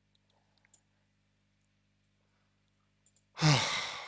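A man's loud sigh about three and a half seconds in: a breathy exhale whose pitch falls. It follows a pause with only a faint low hum.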